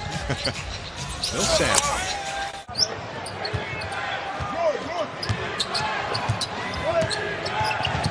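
Basketball game sound in an arena: the ball bouncing on a hardwood court, short squeaks from the players' sneakers, and a steady murmur from the crowd. The sound breaks off briefly near three seconds in at an edit, then the same game sound carries on.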